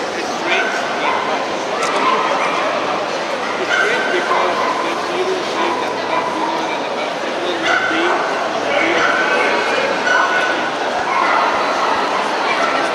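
Dogs giving many short, fairly high-pitched barks and calls over the steady chatter of a crowd.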